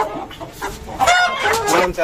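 Chickens calling: a quieter first second, then a run of short pitched calls over the second half.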